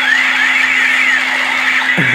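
Battery-operated light-up toy gun running its electronic sound effect: criss-crossing rising and falling sweeps over a steady whirring buzz.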